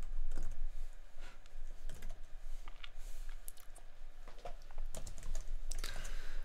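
Typing on a computer keyboard: irregular key clicks, in a flurry at the start and again near the end.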